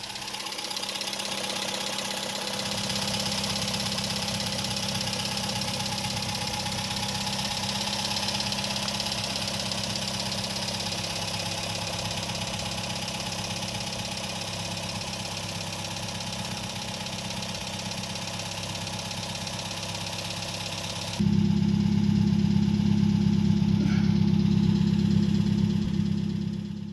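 A 1955 Nash Metropolitan's small Austin-built four-cylinder engine idling steadily, heard at the open engine bay. About 21 seconds in, the sound cuts to the tailpipe, where the same idle is louder and deeper.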